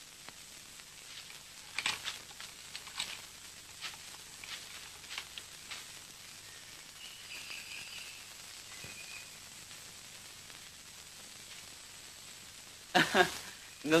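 Faint steady hiss and crackle of an old film soundtrack, with a few soft scattered clicks in the first half and a faint high tone around the middle.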